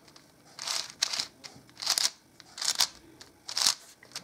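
Layers of a plastic 5x5 puzzle cube being turned by hand: about five quick, separate turns, each a short plastic scrape and click, as a set move sequence is carried out.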